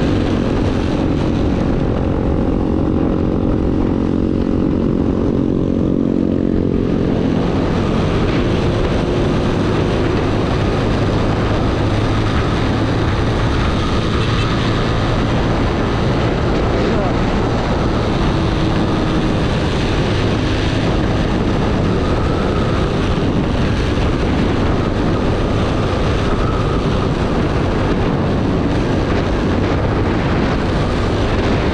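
Honda Wave underbone motorcycle's single-cylinder four-stroke engine running steadily at high revs, heard from the rider's seat. After about seven seconds heavy wind rush on the microphone swamps the engine note as the bike runs at speed.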